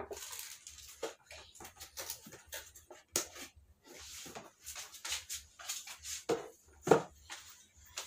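Cardboard box and packaging being handled: irregular rustling, scraping and light knocks, with two louder knocks near the end.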